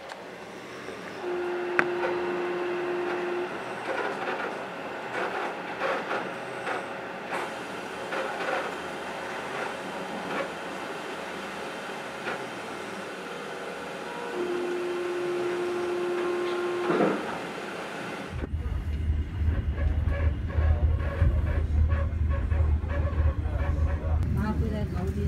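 Passenger train running on its rails, with clicks of the wheels over rail joints, and a steady horn note sounding twice for about two seconds each, once early and once past the middle. About three-quarters of the way in, the sound changes abruptly to a louder, deep rumble of the train in motion.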